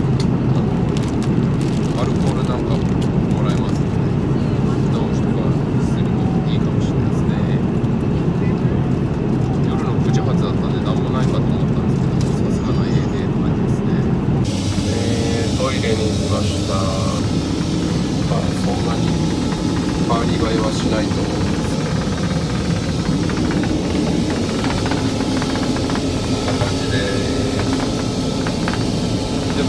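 Steady low roar of an airliner cabin in cruise, the constant engine and air-flow noise heard from a seat. About halfway through it turns brighter and hissier.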